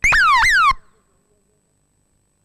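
Two quick falling electronic chirps, each sliding down in pitch for under half a second, back to back and cut off sharply within the first second, like an alarm or sound-effect tone.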